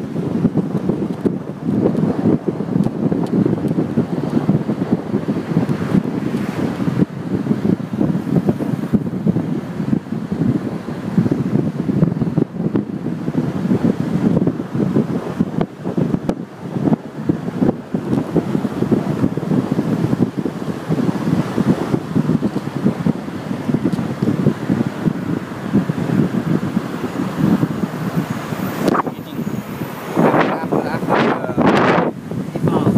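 Wind buffeting the microphone of a camera in a moving car, an uneven fluttering rumble over the car's road noise.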